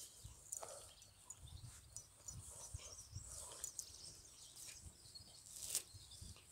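Faint rustling and scuffing of a cocker spaniel rolling on its back in grass, in scattered small bursts.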